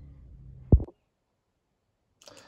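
A faint low steady hum, then a single loud clipped syllable of a man's voice that is cut off abruptly by an edit, followed by dead silence.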